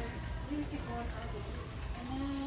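Indistinct background voices, too faint or far off to make out, over a steady low hum of store background noise.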